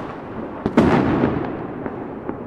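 Fireworks and firecrackers going off. A loud bang just under a second in is followed by a rumbling echo that dies away, over continuous crackling and scattered smaller pops.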